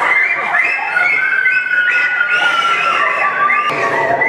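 Several women's voices shrieking and wailing over one another, high held cries that slide and slowly fall in pitch, as bird puppets swoop at them on stage.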